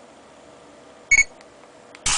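Sony Ericsson Xperia Arc's camera app giving one short, high electronic beep about a second in, the autofocus confirmation as a photo is taken.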